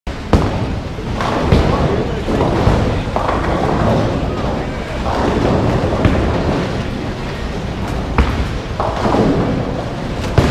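Bowling alley din: balls rolling down the lanes and pins being knocked down, with a few sharp knocks and background chatter.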